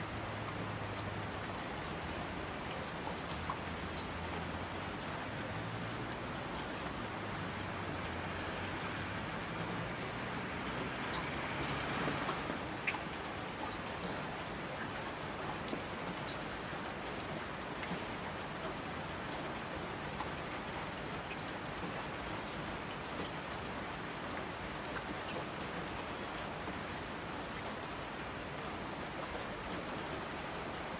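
Steady rain falling, with scattered drop ticks. A low rumble sits under it in the first third, and the rain swells briefly about twelve seconds in.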